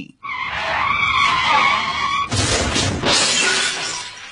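A vehicle's tyres skidding with a wavering squeal, then a loud crash about two seconds in that fades over the next second.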